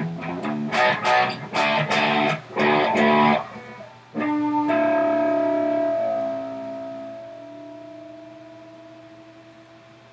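Electric guitar played through an amplifier: a choppy riff of short, stabbed chords for the first three seconds or so. After a brief gap, a chord is struck about four seconds in and left to ring, fading slowly away.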